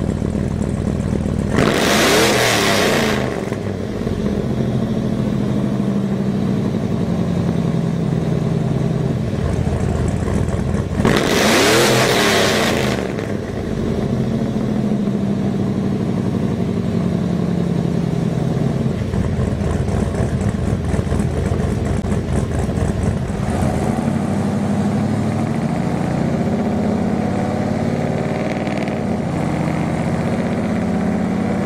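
Chevrolet Avalanche 2500's 8.1-litre (496 cubic inch) Vortec V8, fitted with aftermarket cylinder heads and camshaft, idling through its exhaust. It is blipped twice, about two seconds in and again about eleven seconds in, each rev rising sharply and falling back to idle.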